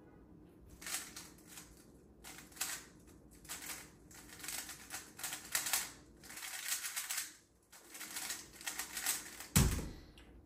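A 3x3 speedcube is turned fast for about nine seconds, with dense rapid clicking and rattling of its layers. Near the end comes a single sharp thump as the cube is set down and the hands slap back onto the timer pads, stopping the solve.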